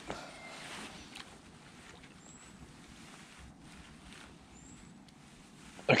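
Faint water splashing and lapping as a bream is drawn into a landing net, over a quiet, steady outdoor hiss, with a couple of soft knocks about a second in.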